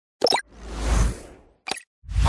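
Animated logo-intro sound effects: a short pop, then a swelling rush of noise with a deep rumble that peaks about a second in and fades, then another short pop near the end.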